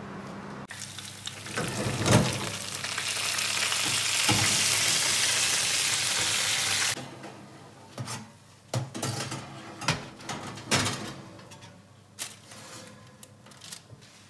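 Chicken pieces sizzling loudly on a roasting tray in a hot oven as the oven is opened, with a clunk about two seconds in. The hiss cuts off suddenly, and a stainless steel roasting tray of potatoes then clinks and knocks against the oven's wire racks as it is slid in.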